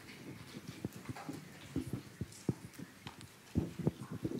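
Irregular soft knocks and thumps, a few per second, from footsteps and a handheld microphone being handled as it is passed to an audience member.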